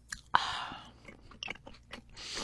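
Close-miked mouth sounds of eating and drinking: a sharp wet smack about a third of a second in, then a brief hissing rush, then soft scattered clicks of chewing.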